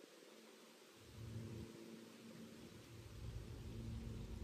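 Quiet outdoor background noise with a faint low rumble that comes in about a second in and again, a little louder, from about three seconds in.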